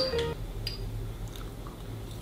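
A few faint clicks of a metal spoon against a small glass baby-food jar as the purée is stirred and scooped, over a low steady hum.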